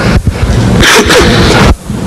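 A man coughing: a short, sharp burst of breath noise a little under a second in.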